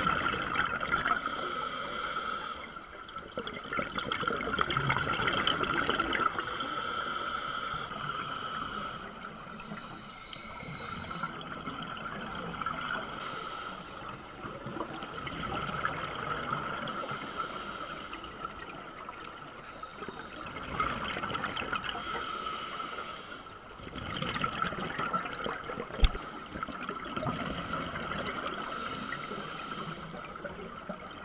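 Scuba regulator breathing heard underwater: slow breaths every few seconds, each a hiss of drawn air and a burst of bubbling exhaust. A steady high-pitched whine sits underneath, and a single sharp click comes near the end.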